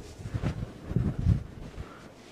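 Low, muffled thumps and rustling on the microphone: a few irregular bumps.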